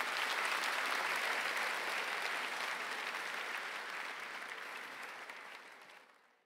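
Audience applauding, the clapping swelling in the first second or so and then slowly dying away until it fades out at the end.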